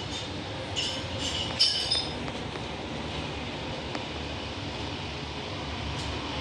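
Steel mixing bowl clinking a few times in the first two seconds as marinated meat pieces are picked out of it, over a steady low background rumble.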